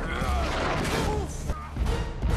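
Film fight-scene sound effects, a swinging blow with a dense crashing burst and sharp hits, over the film's score.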